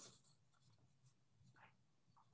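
Near silence on a video-call audio feed, with one faint tick about one and a half seconds in.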